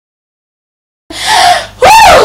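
Dead silence for about the first second, then a woman's loud breathy gasp for air, turning near the end into a high vocal sound sliding up in pitch.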